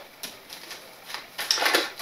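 Tarot cards being shuffled and handled in the hands: a scatter of light card clicks and snaps, thickening into a quick run of them in the second second.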